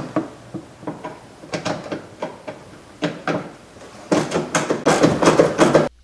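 Irregular clicks and knocks of a socket on an extension and a ratchet being worked onto a 10 mm bolt up inside a car's wheel well, against the plastic inner fender liner. The knocking grows busier near the end and cuts off suddenly.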